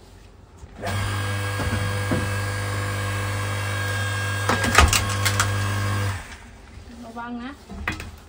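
Electric log splitter's motor runs with a steady hum for about five seconds while the ram drives a log into the wedge. Several sharp cracks come about halfway through as the wood splits, and the motor stops about six seconds in.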